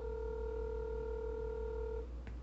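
Telephone ringback tone playing from a smartphone's speaker: one steady two-second ring while an outgoing call waits to be answered.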